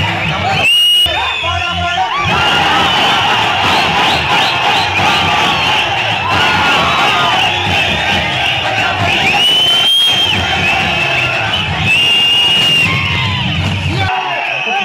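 Cinema audience cheering and shouting over a Tamil film's soundtrack music playing through the hall speakers, with high whistles rising out of the crowd a few times.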